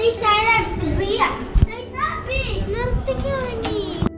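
Small children's high voices shouting and chattering as they play, with a dull thump about a second and a half in.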